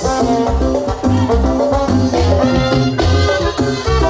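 Latin dance band music playing a son, with bass notes pulsing in a regular beat under sustained melody notes.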